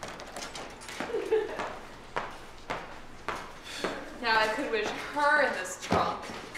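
A handful of separate knocks on a hard surface, irregularly spaced, then a person's voice from about four seconds in.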